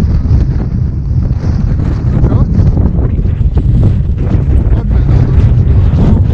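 Strong wind buffeting the camera's microphone: a loud, gusting, deep rumble.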